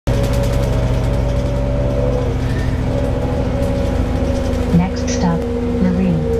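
Interior drone of a moving bus: a steady engine and road noise with a humming note over it. Short snatches of voices come in near the end.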